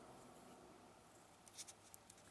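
Near silence, with a few faint small clicks near the end: fingers handling a plastic LEGO minifigure and its gun piece.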